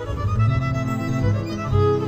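Music: a slow halgató-style melody on violin, its notes wavering with vibrato, over electronic keyboard chords and bass.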